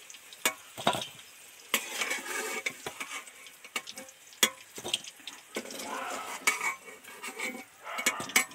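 Deep-fried potato chunks being dropped into a stainless-steel bowl, with a metal spoon clinking and knocking against the steel several times. A hiss of frying oil runs underneath.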